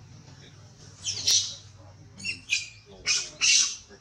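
Newborn long-tailed macaque crying in about four short, shrill squeals, starting about a second in.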